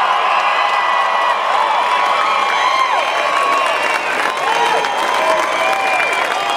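Stadium crowd cheering and applauding, with whoops and shouts rising and falling over the steady clapping.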